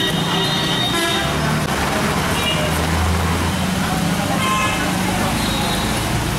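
Street traffic: vehicle engines running, with horns tooting now and then over a background of voices.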